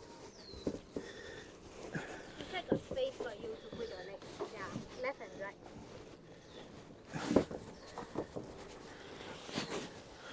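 A few soft knocks and bumps as a person climbs into a white plastic paddle boat at a wooden jetty, the loudest about seven seconds in, under quiet, indistinct voices.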